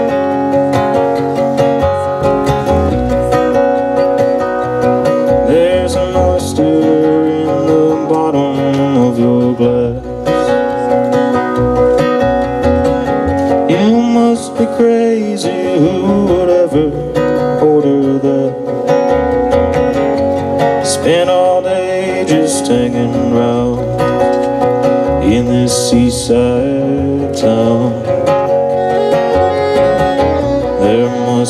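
Live acoustic bluegrass band playing a song: strummed acoustic guitars, mandolin and upright bass, with voices singing at times.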